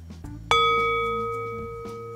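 A singing bowl struck once about half a second in, ringing with one strong low tone and several higher overtones that fade slowly.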